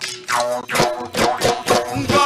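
Gogona, Assamese bamboo jaw harps, twanging in a quick rhythm of about three buzzing twangs a second, their overtones sliding up and down, with dhol drums beating along as Bihu music.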